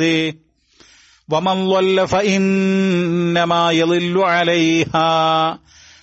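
A man chanting Quranic recitation in Arabic, slow and melodic, with long drawn-out held notes. It breaks off briefly just after the start and again near the end.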